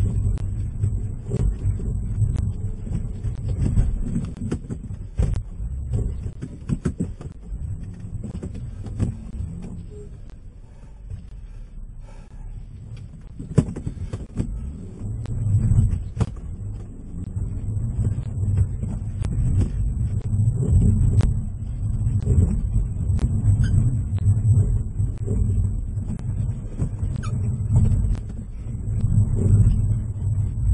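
Car engine running under load with the wheels spinning in snow, losing traction: a low, uneven rumble inside the cabin with scattered knocks. It eases off for a few seconds near the middle, then picks up again.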